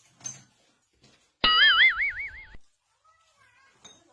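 A cartoon 'boing' sound effect: a springy tone that wobbles up and down and rises, lasting about a second, a little over a second in.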